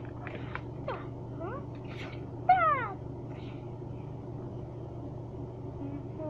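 A few short, high-pitched meow-like calls that glide in pitch. The loudest, about two and a half seconds in, falls steadily. A steady low hum runs underneath.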